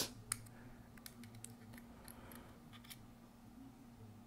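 A few faint, sharp plastic clicks from handling a handheld scanner and taking the SD card out of its slot under the battery cover, over a faint steady room hum.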